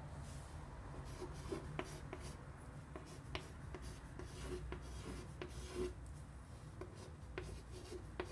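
Chalk writing on a chalkboard: short scratching strokes and light taps of the chalk as numbers and symbols are written.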